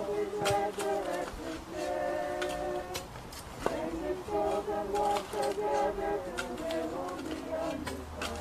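A group of mourners singing a hymn in long held notes, with sharp clinks and scrapes of shovels and a fork striking soil and stones as the grave is filled.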